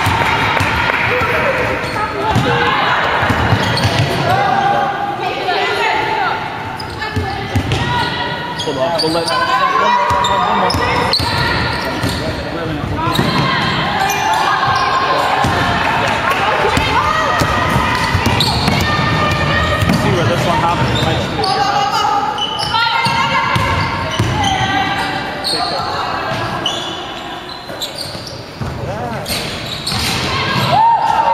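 A basketball bouncing on a wooden sports-hall floor during play, with indistinct players' and onlookers' voices, echoing in a large hall.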